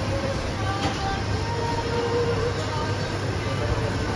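Steady café machinery noise: a continuous rushing hum from the coffee bar's equipment, with faint voices beneath.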